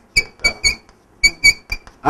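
Chalk squeaking on a blackboard during handwriting: short high-pitched squeaks, one per stroke, in two quick runs of three or four, the second run starting about a second in.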